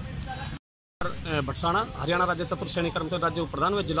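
Steady, high-pitched insect drone with people talking over it. The sound cuts out completely for a moment about half a second in.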